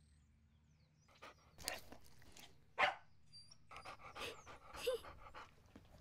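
A dog panting and snuffling in irregular short bursts, with the loudest one about halfway through.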